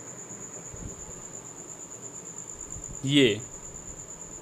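A continuous high-pitched trill that holds one pitch without a break, over a faint steady hiss. A man speaks one short word about three seconds in.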